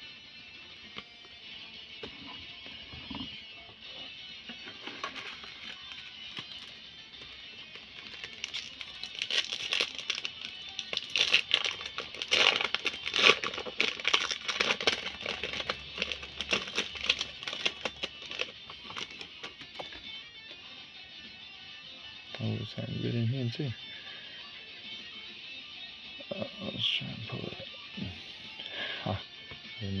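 Background music plays throughout. From about eight to twenty seconds in comes a dense crinkling and crackling: the plastic wrapper of a Pokémon booster pack being torn open and handled.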